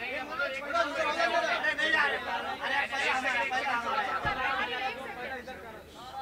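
Overlapping chatter of several people talking and calling out at once, with no single clear voice. There is a brief low thump about four seconds in.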